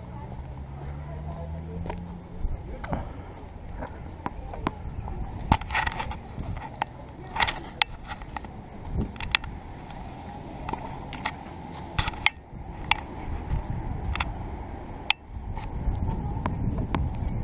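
A string of sharp, irregular knocks and taps from tennis on a hard court: the ball bouncing and being struck by a racket, with shoe scuffs, over steady low background noise.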